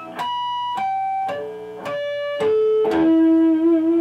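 Natural harmonics on a PRS electric guitar, touched at the 24th-fret point two octaves above each open string. Six clear bell-like notes sound about one every half second, stepping down string by string from the B string to the low E. The last one rings on with a slight waver.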